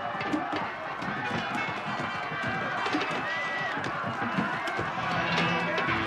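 A crowd of people running in panic along a street: many hurried footsteps and clattering, with overlapping shouts and cries.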